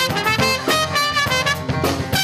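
A live band plays, with a trumpet carrying the melody over the rest of the band.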